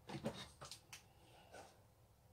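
A few faint, short clicks and light knocks of small ornaments being handled and set on a shelf: a quick cluster in the first second, then one softer knock later.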